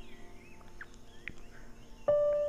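Faint bird calls in the background: a short warbling call near the start, then two brief chirps, over a low steady hum.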